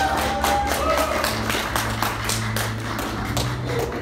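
Background music with a quick, steady percussive beat and a melody line.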